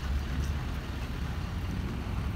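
Wind rumbling on the microphone over a steady hiss of outdoor noise.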